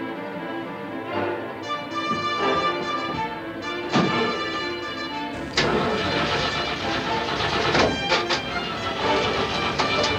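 Orchestral film score with sustained chords. About halfway through, a truck engine starts and runs underneath the music.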